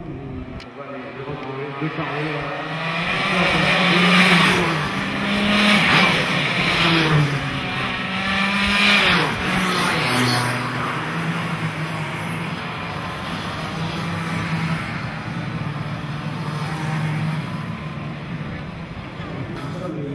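Several racing karts' two-stroke engines running past, their pitch rising and falling as the drivers rev, loudest between about three and ten seconds in, then settling into a steadier drone.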